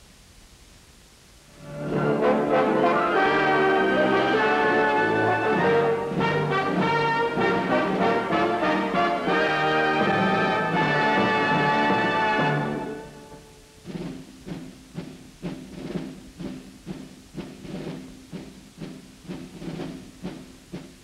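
Orchestral closing music with brass and timpani begins about two seconds in and plays loudly until about thirteen seconds, then gives way to a quieter, regular pulsing about twice a second.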